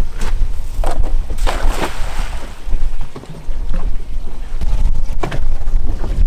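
Wind buffeting the microphone on an open boat, with a rushing splash about a second and a half in as a thrown cast net lands on the water.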